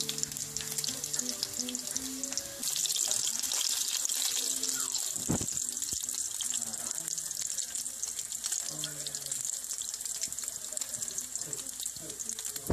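Samosas deep-frying in hot oil: a dense, steady crackling sizzle that gets louder a little over two seconds in, with a single low thump about five seconds in.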